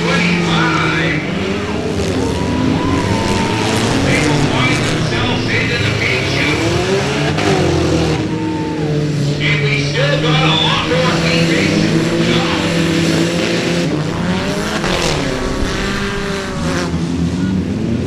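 Several short-track race car engines running hard on an oval, their pitches rising and falling continuously as the cars accelerate, lift and pass.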